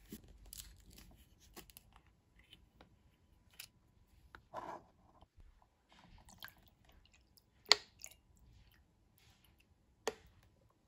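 Thin plastic water bottle crinkling in the hand, with light crackles as its screw cap is twisted open. A single sharp click about three quarters of the way in is the loudest sound.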